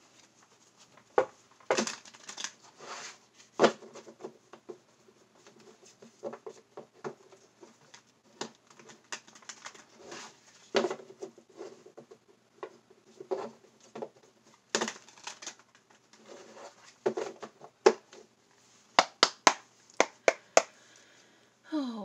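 Handling noises of objects being moved about on a desk by hand: short rustles with scattered clicks and taps, and a quick run of sharp clicks near the end.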